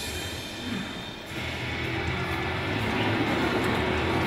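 Documentary soundtrack music played over a hall's loudspeakers. It dips briefly about a second in, then builds steadily with held low tones.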